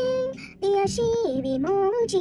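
A woman singing into a close studio microphone, holding long notes that step up and down in pitch, with a brief breath gap about half a second in.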